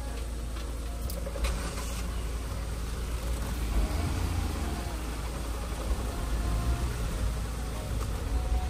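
Mahindra Thar heard from inside its cabin, creeping over a rough, rocky dirt road: a steady low engine and road rumble. A couple of sharp knocks come about one and a half seconds in.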